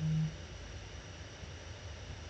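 A woman's brief hummed "mm-hmm" right at the start, then steady low room noise with a faint hum.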